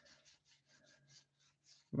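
Faint, quick papery swishes of baseball trading cards sliding over one another as they are flipped through a hand-held stack, several a second.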